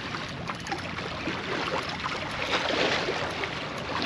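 Steady rushing noise of wind and water at the shoreline.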